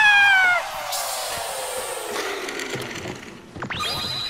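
Cartoon sound effects: a short squeaky cry that falls in pitch, then a long whoosh sinking steadily in pitch, as of the paper spaceship falling away, and near the end a whistle that sweeps up and holds a high tone.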